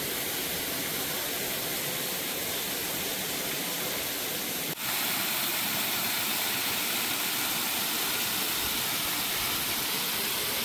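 A steady rushing hiss that breaks off briefly about five seconds in. After the break it comes back as the steady rush of water falling from a waterfall and splashing into a pool.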